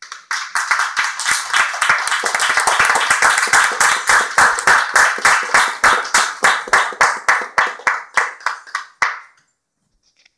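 Small audience applauding, the clapping thinning out into a few separate claps before stopping about nine seconds in.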